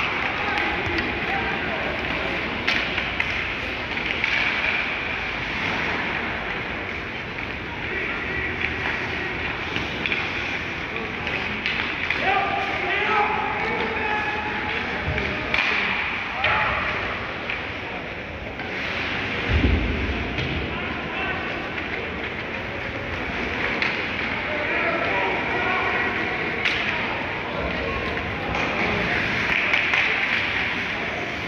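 Ice hockey game sound from the stands: indistinct voices of players and spectators over the rink's ambience, with a few sharp stick-and-puck clicks and one heavy thud about twenty seconds in.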